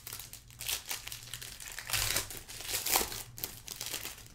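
Gold foil wrapper of a 2018 Gold Standard football card pack crinkling in several short bursts as it is handled and opened by hand.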